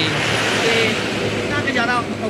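A heavy goods truck passing close by on the highway: a steady rush of engine and tyre noise that eases off in the second half, with a man's voice coming through near the end.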